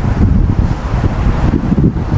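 Low, uneven rumble of air buffeting a close microphone: a man's breathy, wordless chuckling.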